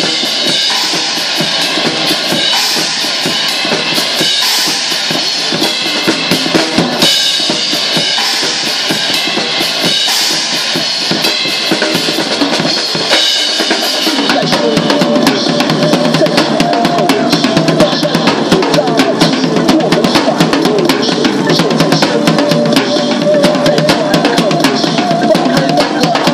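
A drum kit played hard in free improvisation: bass drum and snare strokes under a constant wash of crash and ride cymbals. About halfway through, the playing turns into a denser run of fast drum hits with less cymbal.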